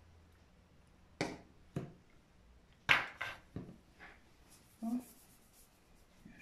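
Several sharp clicks and knocks of small plastic colour bottles and a plastic mixing palette being handled on a tabletop, the loudest about three seconds in.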